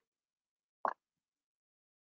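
A single short pop a little under a second in; otherwise quiet.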